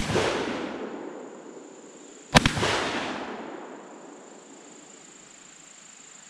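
12-gauge SDS Imports AKSA S4 semi-automatic shotgun firing buckshot. A shot goes off right at the start, and a second shot follows about two and a half seconds in. Each loud report echoes and dies away over a second or more.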